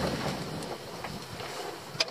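Steady rustling hiss with a few faint clicks as electrical wires are handled and drawn out of a boat's switch box, with a short click right at the start.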